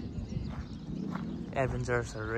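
Faint outdoor background noise, then a person starts speaking near the end.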